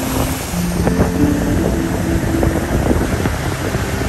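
Motorboat running along a river, its engine under heavy wind noise on the microphone and water rushing past the hull.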